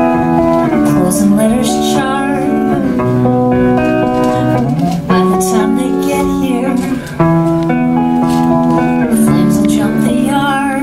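Electric guitar played live in held, changing chords, with a woman singing over it; the playing dips briefly about five and seven seconds in.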